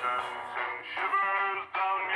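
A voice run through the Voloco app's auto-tune harmoniser, heard as robotic, pitched chords that change every few tenths of a second, over a backing track with a repeating low bass pattern.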